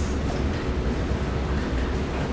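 Steady low rumble with an even hiss over it: the background noise of a classroom, with no distinct events.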